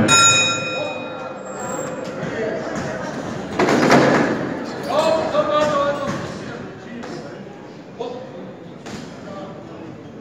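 Boxing ring bell struck once at the start of the round, ringing and fading over about a second and a half. A loud burst of voices follows about four seconds in, then a couple of short thumps near the end.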